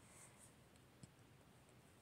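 Near silence: faint room tone in a pause between spoken sentences, with one faint click about a second in.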